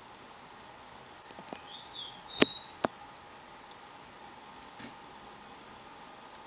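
A few short, high-pitched chirps and two sharp clicks over a steady low hiss. The chirps come about two seconds in, again about half a second later with the first click, and once more near the end.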